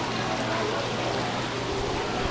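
Steady rush of running or splashing water, with faint voices in the background.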